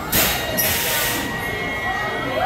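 Two sudden bursts of air hiss from the coaster's pneumatic system in the station: a short one and then a longer one, half a second to a second long.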